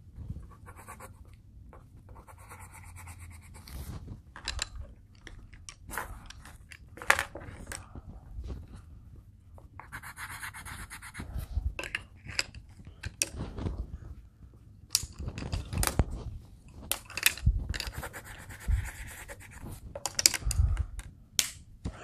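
Coloured pencils scratching on paper in short spells as sprinkles are drawn on, with scattered light clicks and knocks of pencils being picked up and set down on a table.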